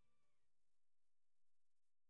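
Near silence at the end of a song: a faint held note dips slightly in pitch and fades out within the first half second, then nothing but a very faint background floor remains.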